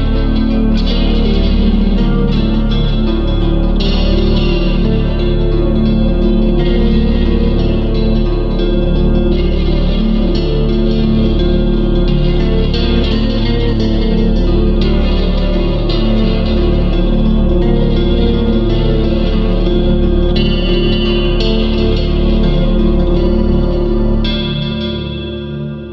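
Loud, steady instrumental band music led by electric guitars with effects and distortion, with no singing.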